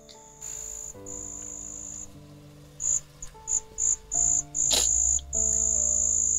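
Crickets chirping in a high, steady trill that comes and goes, in short pulses through the middle and unbroken near the end, over soft background music of slow, sustained notes.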